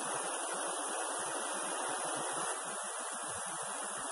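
Steady, even rushing of a river running over stones.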